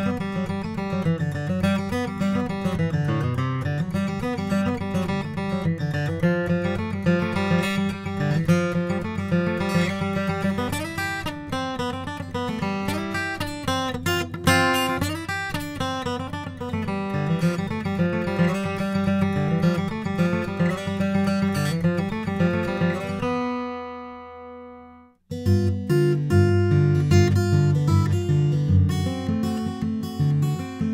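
Martin D-28 Authentic 1937 acoustic dreadnought guitar, Adirondack spruce top over Madagascar rosewood back and sides, played solo: a steady run of picked single notes and chords. About three-quarters through, a chord is left to ring and fades away, and after a short break a new, lower passage of strummed chords begins.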